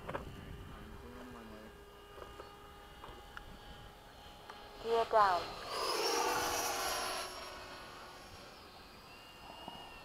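Electric ducted-fan RC jet making a low pass over the field: its fan whine swells, drops in pitch as it goes by about six seconds in, and fades away.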